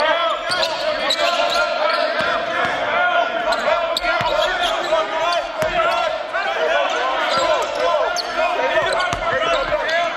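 Many basketball sneakers squeaking on a hardwood gym floor in quick, overlapping high chirps, with a basketball bouncing now and then.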